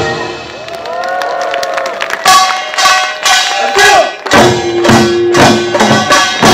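Korean pungmul percussion ensemble of drums and gongs. The drumming breaks off at the start, leaving a few sliding pitched calls. The drums come back in about two seconds in and drive on with a fast, even beat under a held tone.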